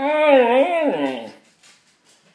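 A male Shikoku ken "talking": one drawn-out, howl-like call of about a second and a half that wavers up and down in pitch, then stops.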